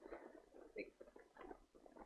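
Near silence with faint scratchy ticks of a stylus stroking a drawing tablet as shading is laid down, and a single quiet muttered word about a second in.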